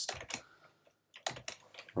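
Keystrokes on a computer keyboard: a few clicks at the start, a short pause, then a quick run of keys in the second half.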